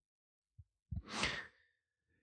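A person's short, breathy sigh into a close microphone about a second in, between stretches of dead silence.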